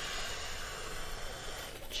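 A slow, steady in-breath, heard as a soft even hiss, as the belly is filled: the first stage of a freediver's deep breath before a breath-hold.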